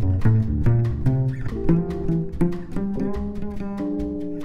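Instrumental jazz quartet recording: a plucked double bass plays a moving line of notes under melodic instruments, over a steady beat.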